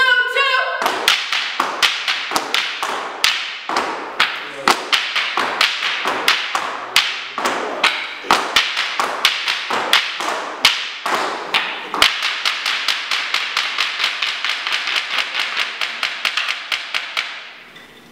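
Step routine with canes: canes rapping a hard floor together with stomping steps, in a fast, driving rhythm of several sharp hits a second that stops shortly before the end. It opens with the end of a sung chant.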